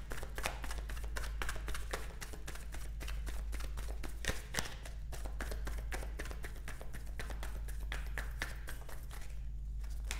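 A tarot deck being shuffled by hand, a fast, steady run of small card clicks and flicks as the cards are passed from hand to hand.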